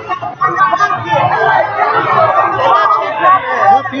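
Indistinct chatter: several voices talking at once, none clear enough to make out words.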